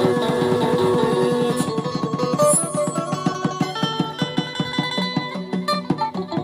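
Live band playing an instrumental passage: electric guitar to the fore over keyboard and drums, with a fast, steady beat.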